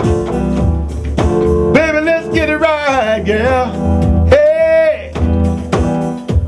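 A man singing a slow blues/soul love song, stretching out the words in long held, wavering notes, with an electronic keyboard backing and a steady low bass underneath.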